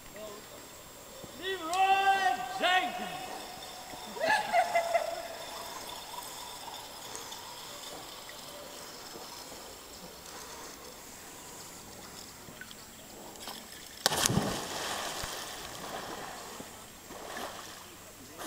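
A person drops from a rope into a lake with one loud splash about fourteen seconds in, the water noise trailing off over the next two seconds. Earlier, a voice gives two long, pitched shouts.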